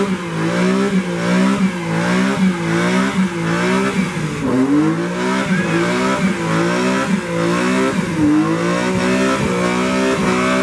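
BMW E46 M3 doing a burnout: its engine is held high and revved up and down over and over, about once or twice a second, over a steady hiss of spinning rear tyres.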